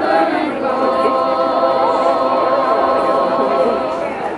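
A small choir of young carolers singing a Christmas carol from song sheets, holding long sustained notes.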